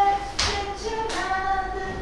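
A voice singing a short phrase of held notes, with a couple of brief hissing consonants between them.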